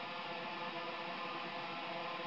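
Steady droning intro of the song's backing track: several held tones at once, dull and without treble, unchanging and without drums.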